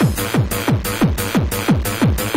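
Fast hard electronic dance music of the makina kind, mixed by a DJ from vinyl turntables: a deep kick drum beats about three times a second under a steady synth line.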